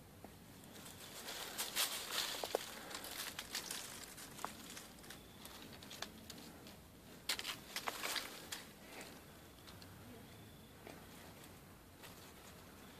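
Twigs and dry leaves rustling and crackling as a PVC pole with a hook is pushed up through a tree's branches, in two bursts: one from about a second in, the other about seven seconds in.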